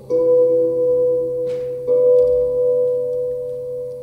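Live ambient music: a held note enters just after the start and a second, higher one joins about two seconds in, both very steady in pitch, over a continuous low drone.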